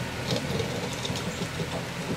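Compact tractor engine running steadily as the tractor moves over loose dirt: a low, even hum under a faint hiss.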